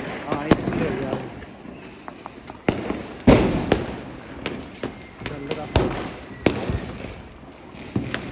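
Diwali firecrackers going off, with about half a dozen sharp bangs at uneven intervals. The loudest bang comes about three seconds in and echoes briefly.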